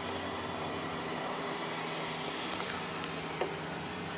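Steady low background hum with a few faint ticks and a soft knock about three and a half seconds in.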